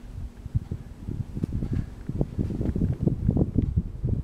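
Harbor Breeze 42-inch ceiling fan just switched on at its fastest speed, its downdraft striking the microphone as low, gusty wind noise that grows louder as the blades spin up.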